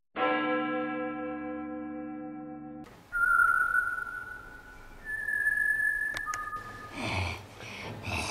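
A held musical chord that fades over about three seconds and stops abruptly. Then come a few long whistled notes, each held steady on one pitch. A breathy rustle with a low thump comes near the end.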